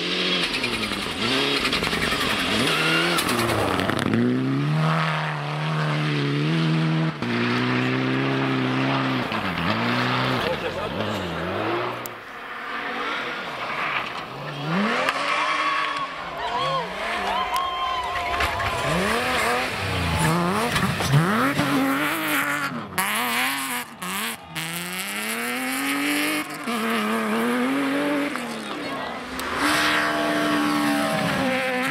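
Rally cars driven flat out on a loose-surface stage, one after another, engines revving hard, with the pitch climbing through the gears and dropping as the drivers lift for corners. There are several abrupt breaks where the sound jumps from one car to the next.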